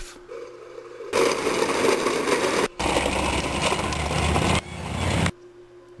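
Plastic wheels of a ride-on toy car rolling over a concrete path, a rough rumbling noise that starts about a second in, breaks off briefly in the middle and cuts off suddenly near the end.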